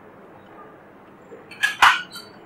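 Two sharp clicks near the end, about a quarter second apart, as a banana-plug patch cord is pushed into a socket on an analog communication trainer board.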